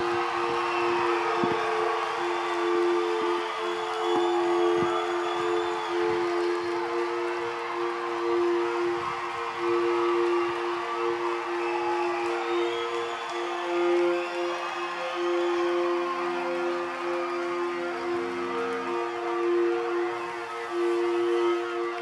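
A steady held synthesizer drone of two sustained notes, with lower notes joining for a few seconds past the middle, under a concert crowd cheering and shouting.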